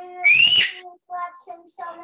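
A short, loud, high-pitched squeal that rises and then falls in pitch, over a child's faint drawn-out voice.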